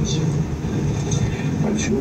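A steady low mechanical hum, with a few short, faint clicks.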